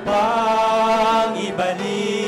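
A man singing a Tagalog worship song into a microphone, with instruments behind him, holding one long note with vibrato for over a second before the next line.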